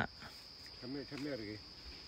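Insects drone as one steady high-pitched tone, with a short voice sound at the start and a soft murmur of voice about a second in.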